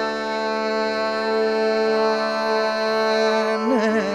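Carnatic vocal music with violin accompaniment: a male voice holds a long steady note, and near the end it breaks into a quick wavering ornament (gamaka).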